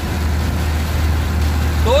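Mercedes-Benz 1218 truck's engine droning steadily, heard from inside the cab while driving, under a steady hiss of heavy rain and wet tyre noise.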